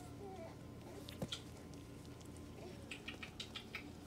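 Faint, high little squeaks and whimpers from young puppies at play, with a few light clicks near the end.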